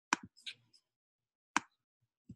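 Three sharp clicks from a computer mouse and keyboard in use: two close together just after the start, and a third about a second and a half in.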